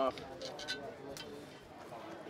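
Faint voices talking in the background, with a few light clicks.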